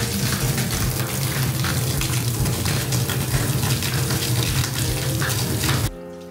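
A steady stream of water pouring from an overhead shower spout in a loud, even rush, then cutting off abruptly near the end.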